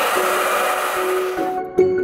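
Handheld hair dryer blowing steadily, aimed at a wall to warm and loosen a stuck-on adhesive. It cuts off suddenly about a second and a half in, and light mallet-percussion music takes over.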